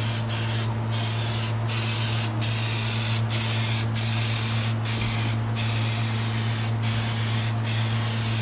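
Aerosol can of Plasti Dip spraying in quick passes, a steady hiss broken by short pauses about once a second, with a steady low hum underneath.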